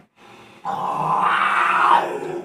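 A person's long, rough, strained growl, starting just over half a second in and loud for about a second and a half before trailing off: the reaction of someone undergoing ruqyah as the healer orders the spirit out.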